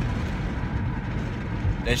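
Steady low rumble of a car running, heard from inside its cabin.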